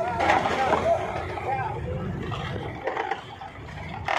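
Voices calling out in short bursts over a steady low rumble, with the calls strongest in the first second and a half.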